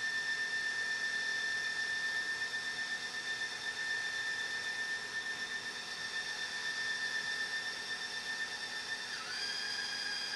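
Meade DS114 telescope's motorized GoTo drive slewing the mount toward an alignment star: a steady, high-pitched motor whine. About nine seconds in the pitch dips briefly and the whine changes as the slew alters speed.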